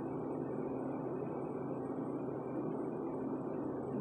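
Steady room noise with a low, even hum, and no distinct events.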